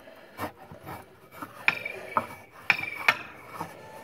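Homemade spring-resistance exercise machine worked by hand: its iron pipe bars and garage door spring give several sharp metallic clicks and clinks with some rubbing and scraping, the loudest in the second half.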